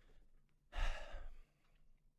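A person sighing into a close microphone: one loud, breathy exhale lasting under a second, starting just before the middle. An exasperated sigh of frustration.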